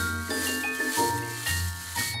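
Light cartoon background music with a bass line and a simple melody, over a rattling, scrubbing noise in the first half that fits brushes scrubbing snail shells.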